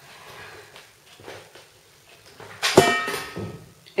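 A knit sweater being handled and put down: faint rustling, then one loud short knock with a brief ringing tone near the end.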